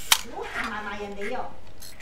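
Yashica TL-Electro SLR's focal-plane shutter closing with a sharp click at the end of a quarter-second exposure, the first click of the pair having opened it a quarter-second earlier. A person's voice murmurs after it.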